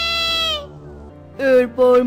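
A cartoon character's high-pitched laugh ends in one long drawn-out note that falls slightly and stops about half a second in. From about a second and a half in, a lower voice starts speaking over a steady musical background.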